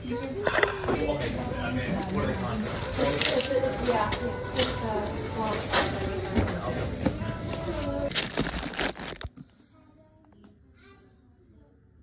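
Indistinct background voices with a few sharp clicks or knocks, cutting off suddenly about nine seconds in, followed by near silence.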